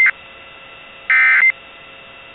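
Emergency Alert System end-of-message SAME data bursts: a loud buzzy digital squawk cuts off just at the start, and another of about half a second comes about a second in, over a steady hiss. These repeated bursts mark the end of the warning message.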